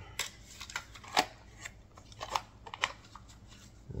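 Plastic cassette tapes and their case being handled: a run of small, irregular clicks and scrapes as a cassette is taken out of its case and turned over in the hand.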